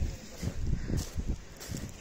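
Footsteps crunching on a shingle beach of small pebbles: a few uneven steps over a low rumble.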